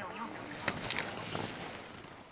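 Indistinct nearby voices over wind noise on the microphone, with a few short hissing scrapes about a second in.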